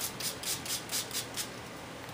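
Small clear plastic spray bottle of water pumped in quick succession, giving a run of short spritzes at about four a second that stops about one and a half seconds in.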